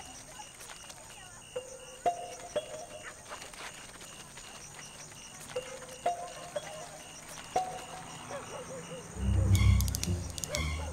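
Soundtrack of ambient nature sounds: a faint chirp pulsing about two to three times a second, short two-note calls now and then among small clicks, and a loud low rumble near the end.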